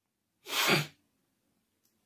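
A single short, breathy vocal burst from a man, about half a second in and lasting under half a second, ending with a brief drop in pitch.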